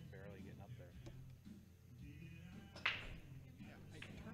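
Faint background murmur of voices and music over a low steady hum, with one sharp click about three seconds in.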